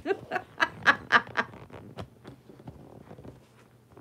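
A woman laughing in about five short bursts, then small clicks and rustles as the phone camera is handled and steadied.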